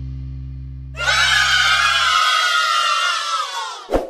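Background music with low held notes dying away. About a second in, a group of children cheer and shout 'yay' for almost three seconds, their voices sliding slightly down in pitch, then a sharp click near the end.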